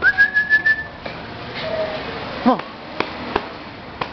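A person whistles once to call a dog: a single clear whistle, about a second long, rising slightly in pitch.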